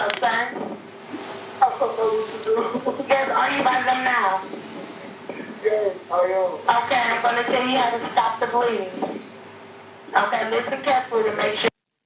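Voices on a recorded emergency phone call being played back, too indistinct for any words to be made out. The audio cuts out briefly near the end.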